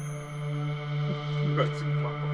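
Background film music: a steady low drone with held higher tones over it.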